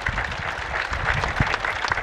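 An audience applauding: many hands clapping together, dense and steady throughout.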